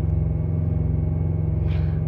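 Carrier APU's small diesel engine running at a steady speed, a low, even hum heard from inside the truck cab.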